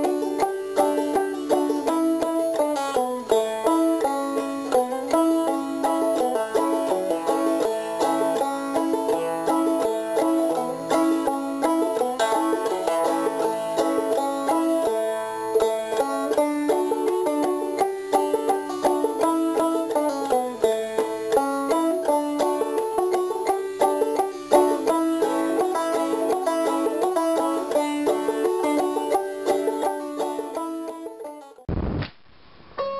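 Banjo music: a steady stream of quickly picked notes with no pause.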